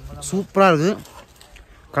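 A man's voice: a short drawn-out vocal sound, its pitch dipping and rising again, followed by a pause.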